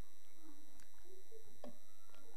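Steady electrical hum with several faint, constant high-pitched tones from the meeting's microphone and recording system, broken only by a couple of faint clicks.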